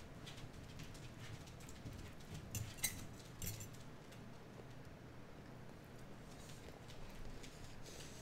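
Quiet room tone with a few faint clicks of a metal fork against a plate, around three seconds in.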